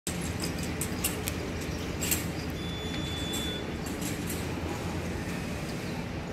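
Railway station platform ambience: a steady low rumble with a few light clicks early on and a brief thin high tone about two and a half seconds in.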